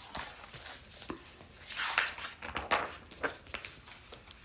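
Handling noise from a hardcover picture book being lifted, turned and its page flipped: paper rustling and light knocks, with a louder rustle about two seconds in.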